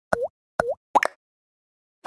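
Cartoon 'plop' sound effects for an animated logo popping in: two short bubbly bloops about half a second apart, each dipping then rising in pitch, followed by a quick double pop about a second in.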